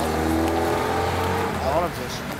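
A motor vehicle's engine running close by on the street, a steady low rumble with an even drone over it, with a short burst of voices near the end.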